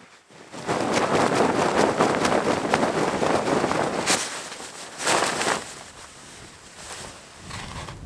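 Frost-covered tent fabric rustling and crackling as it is handled while camp is packed up. It is loud for about three and a half seconds, with another short burst a second later, then quieter.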